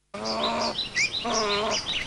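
Wild birds calling over a grassland: many short, quick chirps, with two longer, lower calls in the first half. The sound cuts in suddenly just after the start.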